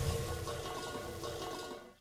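The fading tail of a cartoon smash sound effect: a hiss of noise dying away, with faint music underneath, cutting off just before the end.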